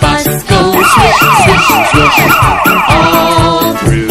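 A police siren sound effect wailing in quick falling sweeps, about three a second, starting about a second in and lasting roughly two seconds. It sits over a children's song with a steady beat that plays throughout.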